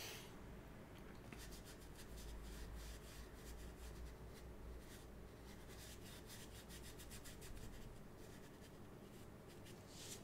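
Faint rubbing of a large ink-loaded paintbrush working across paper in short, repeated strokes.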